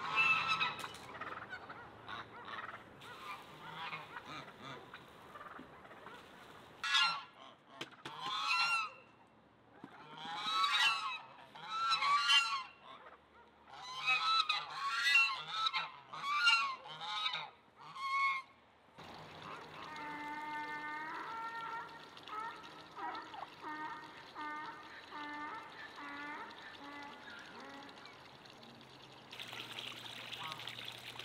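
Domestic geese honking repeatedly, in loud clustered calls through the first two thirds. After that a steadier background with shorter, evenly pitched repeated calls from the poultry flock.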